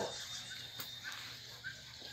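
Quiet outdoor ambience with a few faint, short bird chirps and a thin, steady high tone that stops about a second in.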